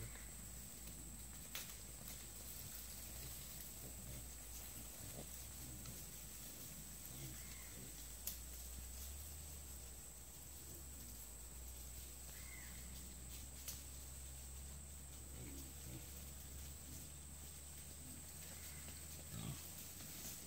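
Faint, scattered grunts of a group of wild hogs foraging, over a steady high insect buzz.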